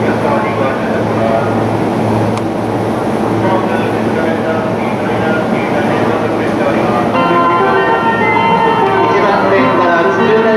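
Station platform noise with indistinct voices and a low steady hum. About seven seconds in, a chiming departure melody starts on the platform speakers and keeps playing, the signal that a train's doors are about to close.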